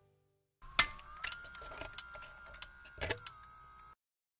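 Jukebox mechanism: a small motor whines, rising slightly in pitch and holding, then dipping near the end, amid mechanical clicks and clunks. The loudest click comes under a second in, and the sound cuts off suddenly.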